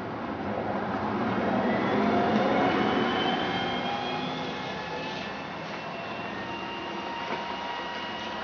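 Hess articulated dual-mode trolleybus running on the overhead wires, pulling away past and then going away, its traction whine rising in pitch as it speeds up. It is loudest about two to three seconds in, then fades as it recedes.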